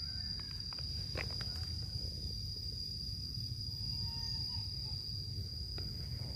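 An insect's steady, unbroken high-pitched call over a low wind rumble, with a couple of faint clicks.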